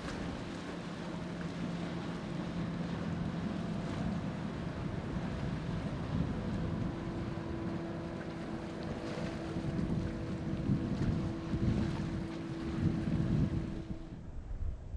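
Boat engine running steadily as a boat passes through the inlet, with wind rumbling on the microphone. The engine hum shifts to a higher steady tone about halfway through, and the wind gusts louder near the end.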